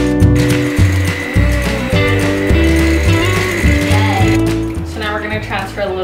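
Electric hand mixer running steadily with a whine for about four seconds, beating cream cheese frosting in a glass bowl, under background music with a steady bass line.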